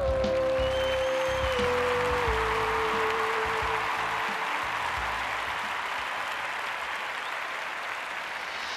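A singer's final held note, stepping down in pitch and fading out within the first four seconds, while audience applause rises over it and then slowly dies away.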